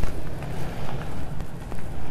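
Outdoor street ambience: a steady low rumble with a few faint clicks.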